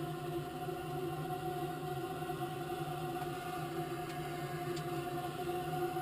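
Handheld butane torch running steadily into the firebox of a small Kimberly wood stove to light the kindling: an even hiss with a steady, droning hum.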